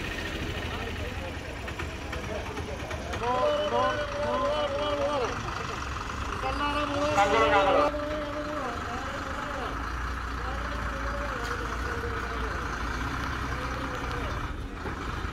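Bus diesel engines running at a bus stand, with voices calling out over them; the loudest call comes about seven seconds in. A bus engine close by gets louder in the last few seconds as the bus pulls past.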